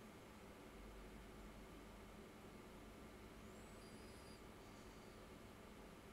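Near silence: room tone with a faint low hum, and a brief faint high-pitched wavering sound about three and a half seconds in.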